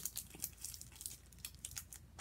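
Packaging of an activity book pack crinkling and crackling in a quick, irregular series of small crackles as it is handled.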